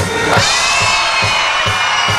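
Live rock band playing an instrumental passage: a drum kit keeps a steady beat under held electric guitar notes, loud through the festival PA.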